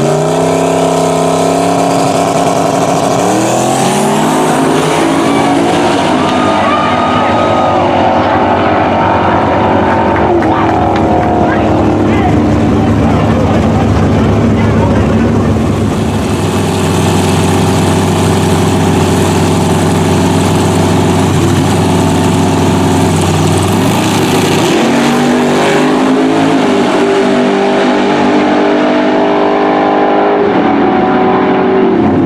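Drag-racing street cars launching and running at full throttle, the engine pitch climbing steeply over the first few seconds and then holding high. A second car's launch climbs again near the end.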